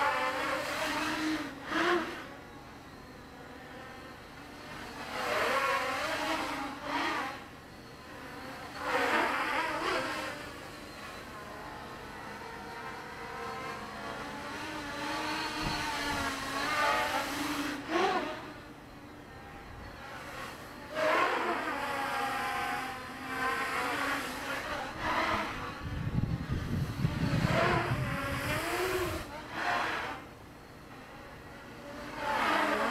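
Quadcopter's Avroto 770kv brushless motors and propellers whining on a 4S pack, the pitch rising and falling in repeated throttle surges with quieter stretches between. A low rumble joins in near the end.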